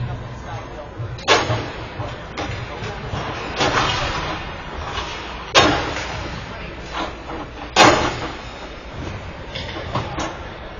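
Three loud, sharp bangs ringing through an ice hockey arena, about a second in, near six seconds and near eight seconds, over background voices.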